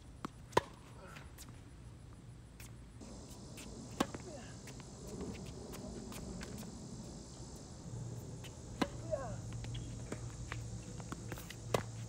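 Tennis ball struck by rackets in a rally: a sharp, loud pop just after the start, then single pops about four seconds in, a quick pair around nine seconds and another near the end.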